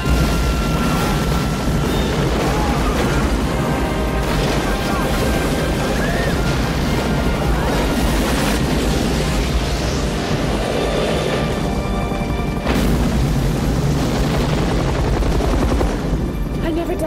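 Film action soundtrack: a huge explosion bursts at the start and rumbles on, mixed with a helicopter's rotor and a dramatic music score. It swells louder again about thirteen seconds in.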